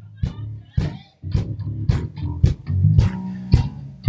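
Bass guitar playing a solo groove of low notes, punctuated by sharp percussive hits about twice a second.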